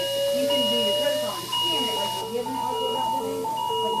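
LIFEPAK 20 defibrillator charging to 200 joules for a synchronized cardioversion shock: a rising charge tone climbs until about a second in, then gives way to a repeating two-note beep that signals the unit is charged and ready to shock.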